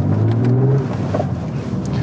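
BMW 130i's naturally aspirated 3.0-litre inline-six engine running while driving, heard from inside the cabin, its note rising briefly in the first second.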